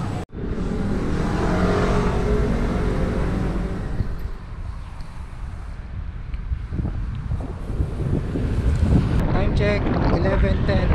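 Wind buffeting a helmet-camera microphone while cycling, with road traffic noise. It is strongest in the first few seconds, eases in the middle and builds again toward the end.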